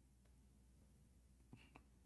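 Near silence: faint room tone, with one short, faint sound about one and a half seconds in.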